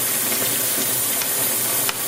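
Kitchen tap running water into a bowl in the sink, a steady hiss of pouring water. There is one sharp tick near the end.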